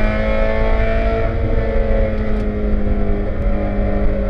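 1999 Spec Miata's 1.8-litre four-cylinder engine running hard at about 6,000–6,400 rpm in fifth gear, heard from inside the cockpit. The pitch eases down slightly in the first second or two as the revs drop, then holds steady.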